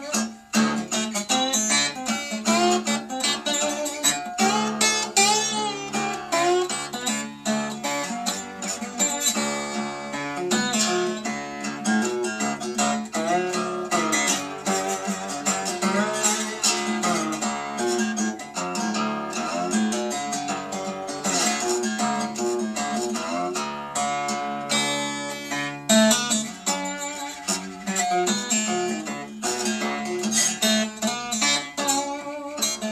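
Weissenborn Style 1 hollow-neck Hawaiian guitar played lap-style with a steel slide bar: a continuous stream of picked notes with frequent pitch slides gliding between them.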